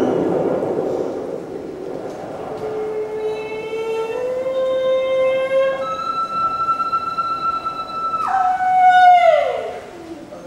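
Solo female voice in a contemporary vocal piece: a breathy, noisy sound at first, then a long held note that rises in small steps, leaps to a very high sustained note, and then drops and glides down.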